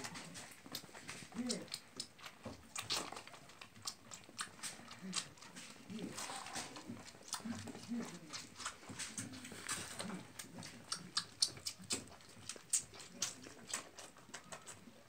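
A young lamb suckling milk from a feeding bottle's teat: a faint, irregular run of quick wet clicks and smacks.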